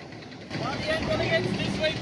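People's voices talking in short broken snatches over a low, steady rumble of city traffic, starting about half a second in after a quieter moment.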